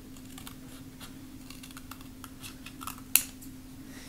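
Ceramic-bladed safety scissors snipping through thick letterpress paper in a run of short, crisp cuts, with a sharper snip about three seconds in.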